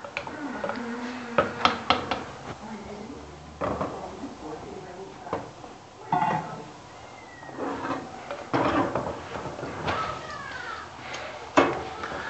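Scattered clinks and knocks of a utensil against a clay cooking pot as pieces of lamb are spooned in, with some speech.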